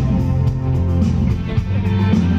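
Live pop-rock band playing, guitar to the fore over bass guitar, keyboard and drums, with a steady beat.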